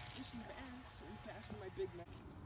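Faint, indistinct voice, quiet talk in the background.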